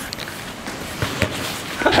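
Footsteps of people walking and jogging on an indoor artificial-turf pitch, with a couple of light knocks about a second in and faint voices in the background.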